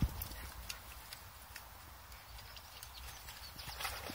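A springer spaniel wading and splashing through a shallow stream, heard faintly as scattered ticks and small splashes, with a cluster of them near the end, over a low rumble.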